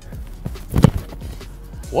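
A football kicked off a holder: one sharp thump of foot striking ball a little under a second in, over background music.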